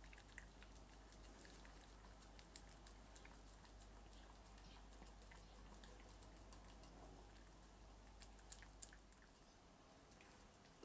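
A small dog eating from a bowl: faint, scattered clicks of licking and chewing, with a couple of sharper clicks near the end.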